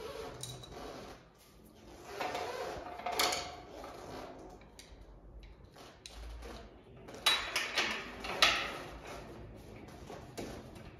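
Door hardware being fitted by hand to a door frame: clicks, scrapes and light knocks in two clusters, about two seconds in and again from about seven to eight and a half seconds, the sharpest knocks in the second cluster.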